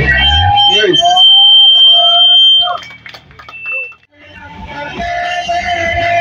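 Punk band playing live, breaking off about half a second in into a loud stretch of wavering, gliding tones with a steady high whine over them. The sound drops away almost to nothing around three to four seconds in, then the full band comes back in near the end.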